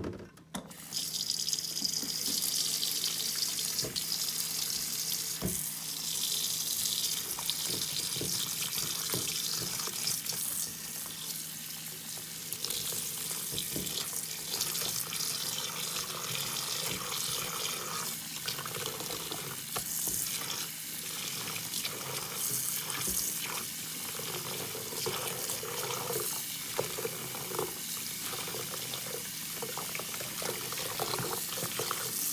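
Kitchen tap turned on just after the start and running steadily into a bowl of foamy soapy water in a stainless steel sink, while sponges are swished around in the water with small splashes.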